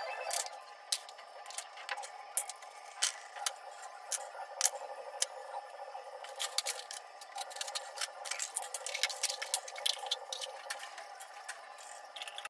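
Kitchenware being handled: irregular light clinks and knocks of aluminium pots, lids and plastic containers as dishes are dried with a cloth and put away, over a faint steady hum.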